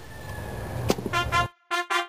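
A boombox key clicks about a second in, and music starts at once: a quick run of short, clipped pitched notes.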